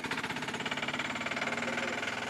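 Small engine of a three-wheeled cargo vehicle running with a rapid, even chug of about ten beats a second.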